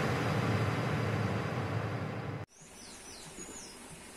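Noisy tail of an intro logo sound effect fading slowly, cut off abruptly about two and a half seconds in. Then faint garden ambience with a few short bird chirps.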